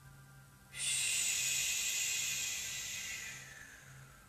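A long, breathy exhale that starts suddenly about a second in and trails off over about three seconds, over a faint low hum.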